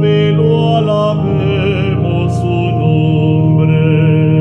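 A man singing a slow hymn in Spanish over sustained organ chords, his voice wavering and gliding between notes.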